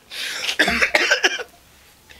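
A man laughing hard: one breathy, cough-like burst of laughter lasting about a second and a half, then a short pause.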